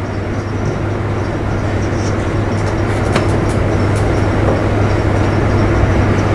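Steady low hum over a rushing background noise, slowly growing a little louder, with a faint tap about three seconds in.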